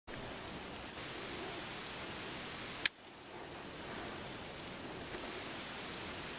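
Steady quiet hiss of outdoor ambience, broken by one sharp click a little before three seconds in, after which the background briefly dips and recovers; a second, fainter tick comes about two seconds later.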